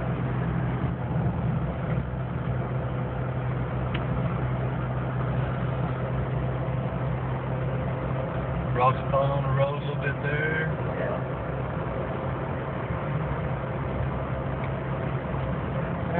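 Steady low drone of a vehicle's engine and road noise heard from inside the cabin as it drives down a winding mountain road. A brief voice is heard about nine seconds in.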